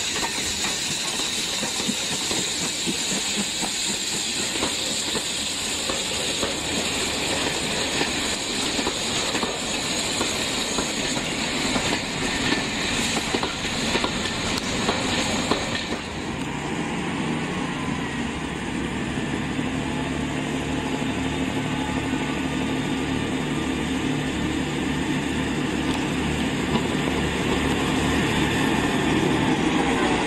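A steam locomotive hissing steam, with some clatter of rolling stock; about halfway through, the sound changes abruptly to a Class 158 diesel multiple unit's underfloor diesel engines running with a steady low hum as the unit moves along the platform.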